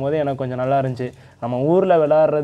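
A man speaking, with a brief pause a little over a second in.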